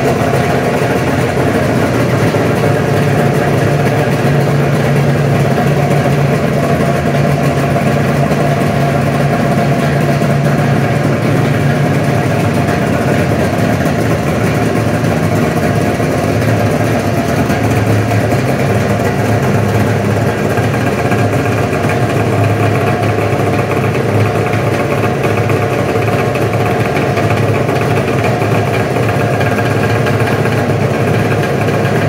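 Two Polaris two-stroke triple-cylinder snowmobile engines, a modified 680 and a 600, idling together steadily. The 680 gives off a noticeably bigger thump than the 600. The low engine note settles slightly lower about halfway through.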